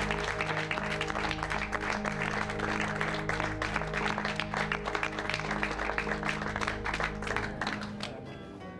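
A crowd applauding, dense irregular clapping, over music holding low sustained chords. Both cut off together at the very end.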